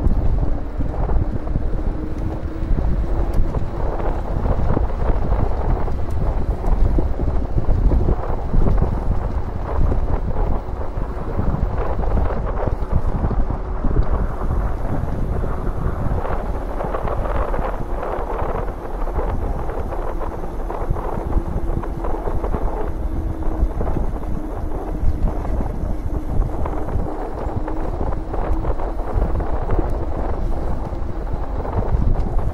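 Wind buffeting the camera microphone as an electric mountain bike rides fast along a paved trail, with a faint steady whine from the bike that rises slightly in pitch at times.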